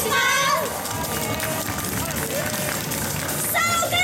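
Live J-pop idol performance: a pop backing track plays over a PA speaker. Young women sing into handheld microphones briefly at the start and again near the end, with only the backing track between.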